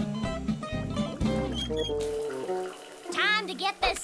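Cartoon background music that gives way about halfway through to a shower running, a steady hiss of spray. A short, wavering voice sounds over the shower near the end.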